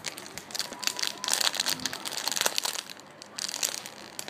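Clear plastic packaging bag crinkling as it is handled, with irregular crackles that are busiest in the middle.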